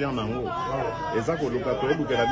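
Several people talking at once, their overlapping voices forming an excited chatter.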